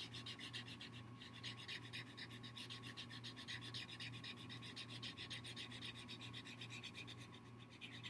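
Felt-tip marker scratching back and forth on paper as a segment is coloured in: a faint, quick run of strokes, several a second.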